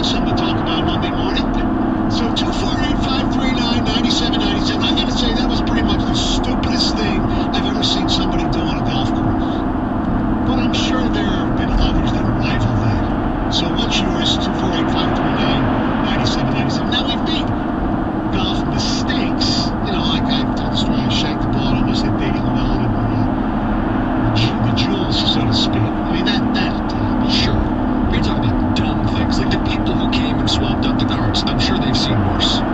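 Steady road and engine noise inside a car cruising on a freeway at about 68 mph, with indistinct voices running through it.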